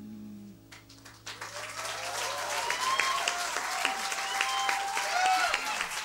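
The last piano chord of a song dies away, then audience applause breaks out about a second in, with cheers and whistles over it.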